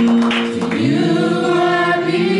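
Gospel singing by voices on microphones, holding long notes that shift in pitch a couple of times.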